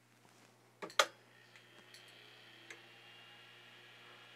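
Click of a Lotmaxx SC-10 Shark 3D printer's power switch being flipped on about a second in, then a faint steady whine as the printer and its laser module's cooling fan power up, with a couple of faint ticks.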